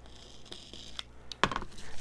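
Washi tape being worked on a sheet of paper: a faint scraping hiss, then a few sharp clicks and taps about a second and a half in.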